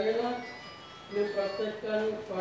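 Voices singing a slow melody: held notes that step from one pitch to the next, with a brief lull in the middle.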